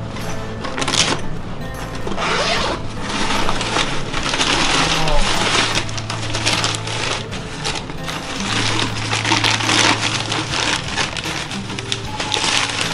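Brown paper wrapping and a cloth bag being handled and pulled open, with a steady crackling rustle over background music that has a steady bass line.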